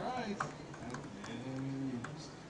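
Voices calling out: a short spoken syllable at the start and a long, held call near the end, with a few sharp clicks in between.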